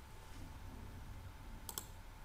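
A computer mouse clicked twice in quick succession near the end, sharp and brief, over a faint low steady hum.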